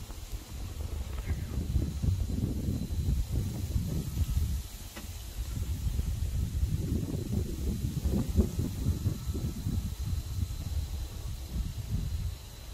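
Low, irregular rumbling noise on the phone's microphone, dipping briefly about five seconds in.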